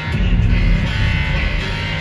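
Live concert music played loud over an arena sound system, heard from within the crowd. A heavy low bass comes in at the start and the music swells for about a second.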